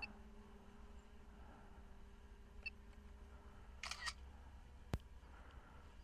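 A short camera-shutter sound from the DJI RC controller as it takes a 48-megapixel photo, about four seconds in, followed by a single sharp click, over a faint steady hum.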